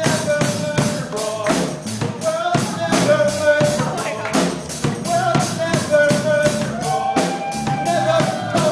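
Live worship music: a band with a drum kit keeping a steady beat under a voice singing a held, wavering melody.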